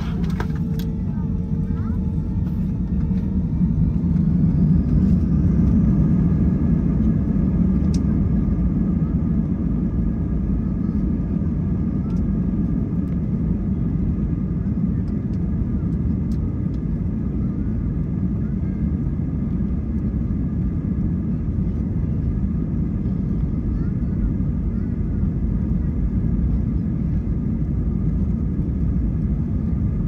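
Airbus A320-family jet engines heard from inside the cabin while the aircraft taxis: a steady, loud rumble with a faint engine whine. The noise swells about four seconds in and then holds steady.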